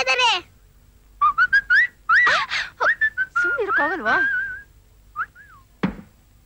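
Whistling: a run of short, high gliding notes, some swooping down steeply, followed by a couple of brief high notes and a short thump near the end.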